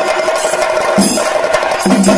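Chenda drum ensemble played with sticks: a dense, rapid roll of strokes, with a deeper, stronger beat landing about once a second.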